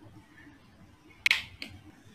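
A sharp click about a second in, followed shortly by a fainter one, over quiet room tone.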